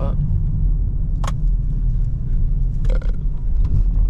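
Dodge Charger Scat Pack's 6.4-litre Hemi V8 running under way, a steady low rumble heard inside the cabin. A single brief click sounds about a second in.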